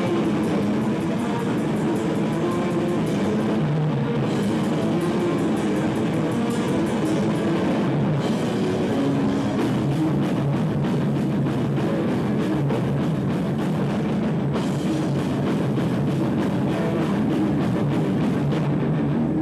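A live rock band playing loud, heavy music: distorted electric guitars over a drum kit, with cymbals and drums hitting throughout.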